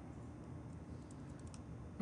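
A few faint clicks from computer input at a desk about a second and a half in, over quiet room tone.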